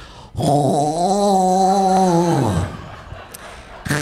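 A man's vocal impression of a weird throat noise, made close into a stage microphone: one drawn-out, guttural pitched sound of about two seconds that drops in pitch as it ends.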